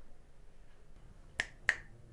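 Two finger snaps about a third of a second apart, the second louder.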